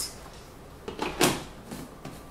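A plastic blender lid being picked up and pressed onto the blender jar: a couple of short clacks about a second in, then a smaller one.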